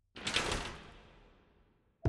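Whoosh sound effect in a TV news channel's logo ident: a sudden swish of noise a moment in that fades away over about a second.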